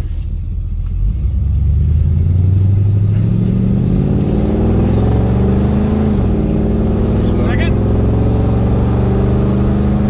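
Ford Torino's engine pulling through its C4 automatic under acceleration, heard from inside the cabin: the revs climb steadily, drop sharply about six seconds in as the transmission shifts up, then climb again. It is a road test of a C4 suspected of not shifting correctly.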